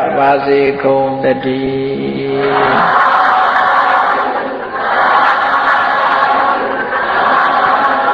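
A monk's male voice chanting Pali, holding a long steady note that ends about 2.7 seconds in. It is followed by a blurred, hazy wash of sound in two long swells.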